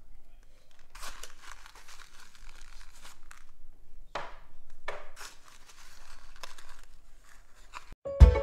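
Paper seed packet crinkling and rustling in the hand in a series of short irregular bursts.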